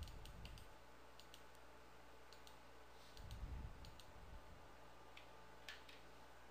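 Faint, scattered clicks of a computer mouse and keyboard as a link is copied and pasted into a web browser, over near-silent room tone, with a soft low rumble about three seconds in.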